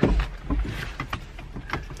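A low rumbling bump at the start, then scattered small clicks and knocks inside a car: camera handling noise and the car's passenger door being opened.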